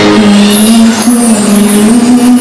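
A male singer's amplified voice holding long notes that step slightly upward, over a live band or backing track with drums and guitar, recorded very loud.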